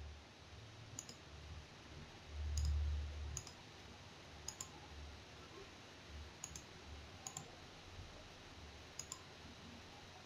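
Faint, irregular computer mouse clicks, about nine in all, as files are picked and buttons pressed, over a low steady hum. A brief low rumble swells a few seconds in.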